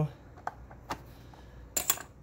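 A few light, sharp clicks about half a second apart, then a quick cluster of sharper metallic clicks near the end: small metal parts or tools being handled.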